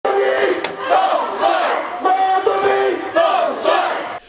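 A crowd of election campaign supporters shouting a chant in unison, in repeated calls about once a second, to greet an arriving candidate.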